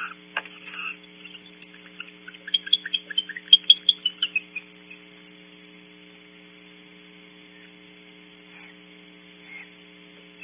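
Barn owls calling: a rapid run of short, high chirping calls, about five a second, lasting roughly two and a half seconds, with a single call just before it and two faint ones near the end. A steady electrical mains hum from the camera's microphone runs underneath.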